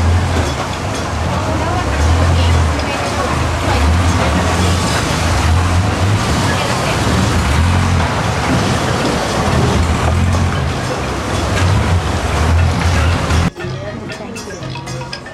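Motorboat engine running, with a low drone that rises and falls, under a wash of water and wind noise; the sound cuts off abruptly near the end.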